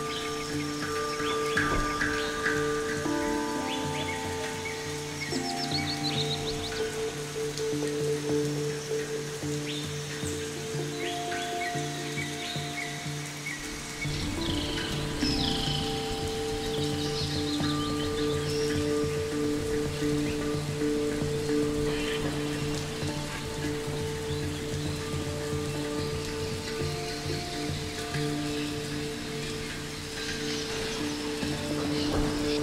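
Ambient electronic meditation music of sustained drone chords on low and mid notes, with a deeper bass layer coming in about halfway through. Forest birdsong is mixed in, short chirps and trills now and then, over a soft steady hiss of forest ambience.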